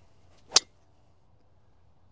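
Golf driver striking a teed ball: one sharp crack about half a second in. The ball is caught off-centre, on the heel of the face.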